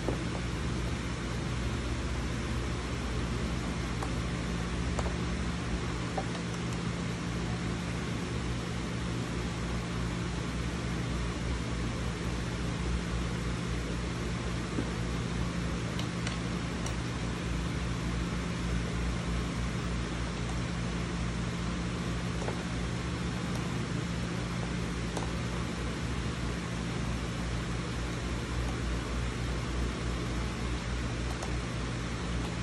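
A steady low mechanical hum with a constant hiss, with a few faint clicks scattered through it.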